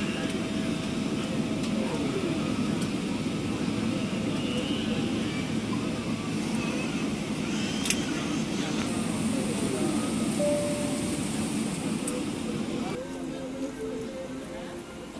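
Steady low cabin rumble inside a Boeing 777-300ER taxiing after landing, from the idling jet engines and air conditioning, with a few faint clicks. The rumble drops away near the end.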